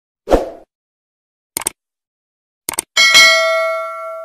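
Subscribe-button sound effects: a short thump, two quick double clicks, then a bright bell ding that rings on and fades away.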